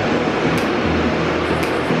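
Loud, steady rushing noise of a subway train running through an underground station.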